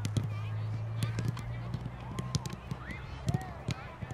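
Soccer balls being kicked and trapped by many players at once: a string of irregular sharp thuds from passes and first touches. Faint distant voices and a steady low hum sit underneath.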